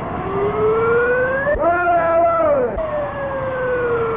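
A siren-like wail: one pitch rising for about a second and a half, wavering at its peak for about a second, then falling slowly.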